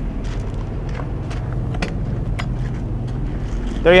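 8,000-watt Onan quiet diesel generator running with a steady low hum, with a few light clicks over it.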